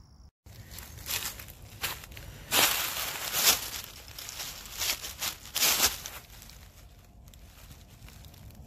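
Dry leaf litter crunching and rustling under shifting feet in irregular bursts as a person settles onto a stick tripod stool, loudest in the middle and then dying down near the end.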